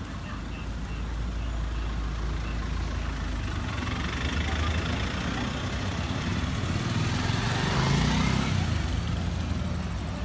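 A pickup truck drives past close by, its engine and tyres growing louder to a peak about eight seconds in, then easing off.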